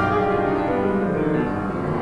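Grand piano played solo: a classical piece in held notes and chords.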